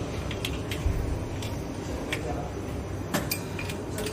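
Irregular metallic clicks and clinks as a long-handled wrench turns and loosens a screw on a cartoning machine's steel frame, over a steady low hum.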